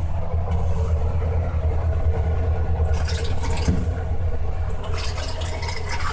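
Dometic 310 RV toilet being flushed with its foot pedal pressed all the way down, water rushing into and through the bowl, over a steady low machine hum.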